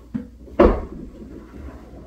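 A light knock, then about half a second later a louder thump, as of something bumped or shut indoors.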